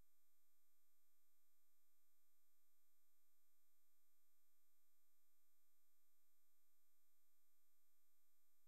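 Near silence, with only a very faint steady electronic tone underneath.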